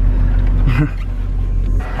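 Car engine running, heard from inside the cabin as a steady low rumble, with a brief voice sound a little under a second in.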